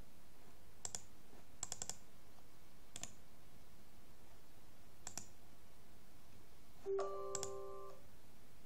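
Computer mouse clicks: single clicks and a quick run of three clicks a little under two seconds in. Near the end, a short electronic chime of several steady tones sounds for about a second.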